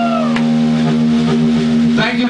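The final chord of a live rock song: a held note slides down, a last drum and cymbal hit lands about half a second in, and then the band's amplified chord rings on steadily without fading.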